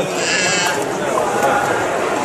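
Indistinct voices chattering in a large hall, with a brief high, wavering call in the first second.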